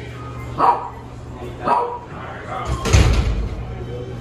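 A dog barking three times, short single barks about a second apart, the last one the loudest.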